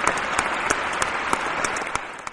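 Audience applause, many hands clapping steadily, starting to fade near the end.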